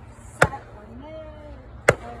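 A hatchet chopping into a wooden log: two sharp blows about a second and a half apart.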